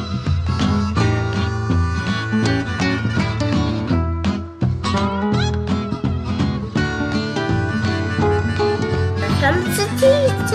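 Instrumental background music with guitar.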